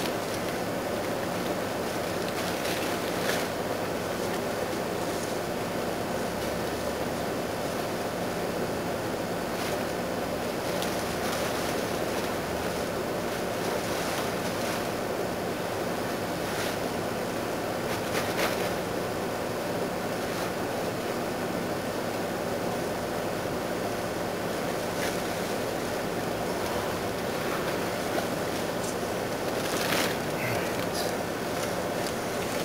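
Steady rushing noise like wind on the microphone, with a few faint clicks and rustles.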